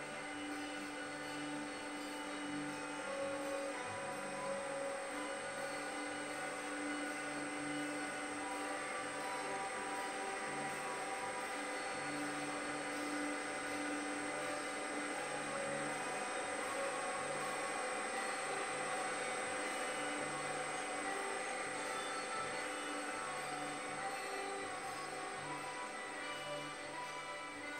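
Background music of slow, sustained tones that shift every second or two.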